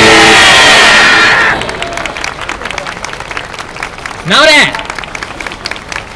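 Very loud yosakoi dance music ending on a held chord and stopping about a second and a half in, followed by audience applause. About four seconds in comes one loud shouted command, "naore", the call for the dancers to straighten up from their final pose.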